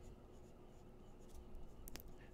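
Faint sound of a ballpoint pen writing on paper, with a single light click near the end.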